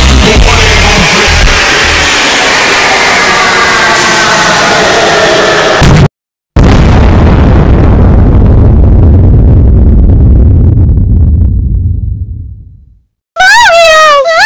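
Heavily distorted, overdriven music slowly sinking in pitch, cut off abruptly. After a brief silence comes a long distorted explosion boom that rumbles and fades away. Near the end a loud high cartoon crying wail breaks in.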